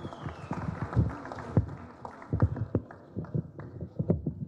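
Irregular knocks and footsteps, a few a second, from people moving about and getting up in a hall.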